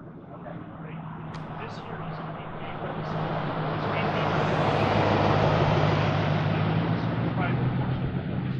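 Vehicle noise from a passing motor vehicle: a steady low engine hum under a hiss that builds gradually to a peak about five seconds in, then eases slightly.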